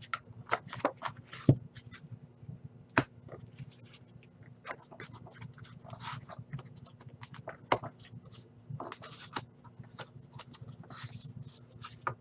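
Hands handling a cardboard trading-card box and its packaging: scattered clicks, taps and rustles of card stock and plastic, with sharper taps about one and a half, three and nearly eight seconds in. A faint steady hum lies underneath.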